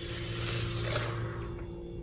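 A thin protective paper sheet rustling as it is peeled off a laptop screen, loudest during the first second, over a steady low hum.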